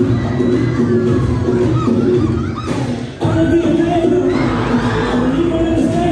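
An audience cheering and shouting over loud dance music played through the hall's speakers. The music dips briefly and cuts back in sharply about three seconds in.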